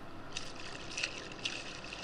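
Water splashing as a hooked porgy is scooped out of the water in a landing net, in short irregular splashes that begin about half a second in.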